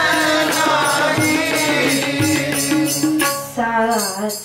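Sikh devotional kirtan: a woman singing a hymn to tabla accompaniment, with held sung notes over the drum strokes. The singing breaks briefly near the end between phrases.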